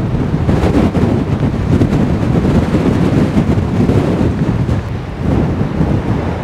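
Strong wind buffeting the camera microphone: a loud, gusting low rumble.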